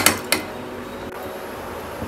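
A metal spoon knocks against an aluminium pressure cooker: one sharp clink at the start and a lighter one just after. Then a faint, steady sizzle as the rice and peas fry in the cooker.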